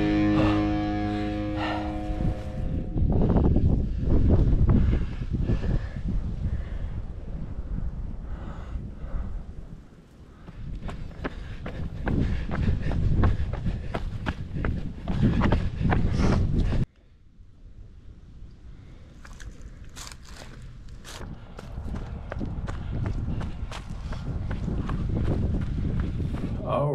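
Background music fading out in the first couple of seconds. Then a runner's footsteps on a dirt and rock trail, with low rumbling noise on the microphone. About 17 s in the sound cuts abruptly to a quieter stretch of footsteps.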